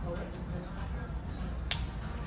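A single sharp click near the end, over a steady low background rumble.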